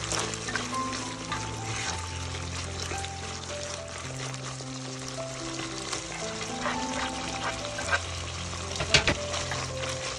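Chicken livers sizzling as they fry in a pot while a spatula stirs them, with a brief sharp clatter about nine seconds in, under background music.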